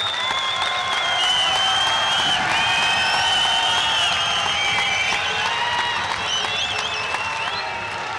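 Large hall audience applauding steadily, with several long, wavering high whistles over the clapping, easing slightly near the end.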